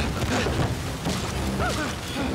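Crashes and thuds of a wooden boat deck being smashed, with short yelping cries over a dense low rumble.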